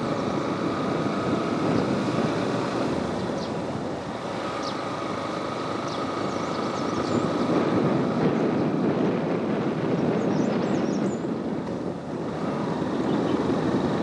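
Steady engine and road noise of a moving vehicle, heard from on board as it drives along a paved road, with a faint steady whine above it.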